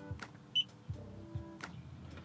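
Quiet background music with a single short, high beep about half a second in.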